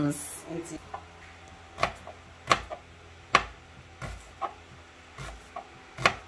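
Kitchen knife cutting through an onion onto a plastic cutting board: a series of separate, irregularly spaced knocks, roughly one a second.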